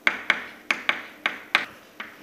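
Chalk tapping and scraping on a blackboard as someone writes, in a quick irregular run of about six or seven sharp taps.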